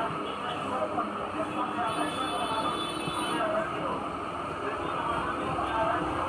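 Steady rumbling background noise with faint voices mixed in, and a brief thin high whine a couple of seconds in.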